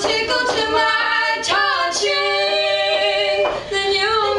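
Women's voices singing a cappella, holding long notes, with a brief break shortly before the end.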